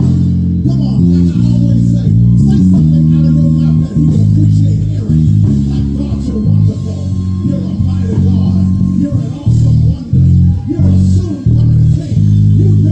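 Pre-Gibson Tobias five-string electric bass playing a loud bass line, its deep notes changing every half second or so, turning to short detached notes with small gaps near the end.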